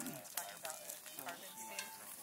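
Wood campfire crackling, with a scattering of sharp pops from the burning logs.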